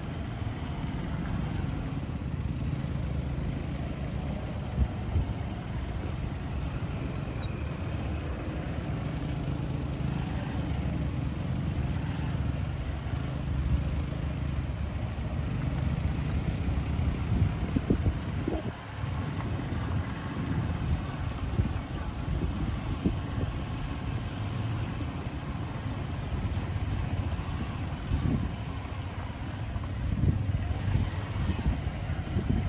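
Engines of trucks and buses idling and creeping in a traffic jam, a steady low rumble with a few short louder peaks.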